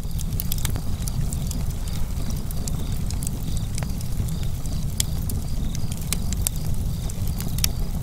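Wood fire crackling: a steady low rumble of flames with frequent sharp, irregular pops.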